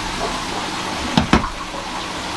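Steady rushing and trickling of water from aquarium sump filtration, with two quick clicks just past a second in.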